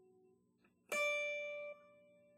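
A single note plucked on a Telecaster-style electric guitar, fret 10 of the high E string (a D), about a second in. It rings clearly for under a second, then is mostly damped, leaving a faint tail. Before it, the faint end of the previous note dies away.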